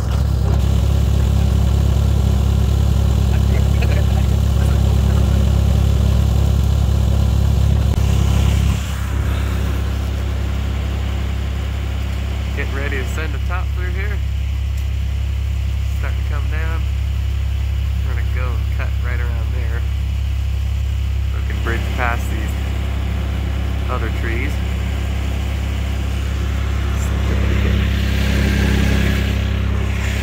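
Vermeer mini skid steer's engine running steadily; about nine seconds in its note changes and it drops a little in level, as if throttled back.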